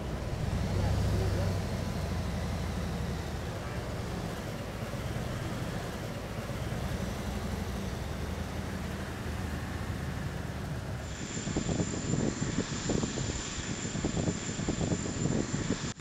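Low steady rumble of a limousine moving slowly, with indistinct voices in the background. About two-thirds of the way through the sound turns busier and more uneven.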